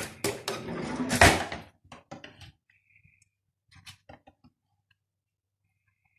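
Kitchen utensils and cookware clattering: a slotted spoon knocking against the grill's cooking pot and being set down, with two sharp knocks in the first second and a half, then a few light clicks.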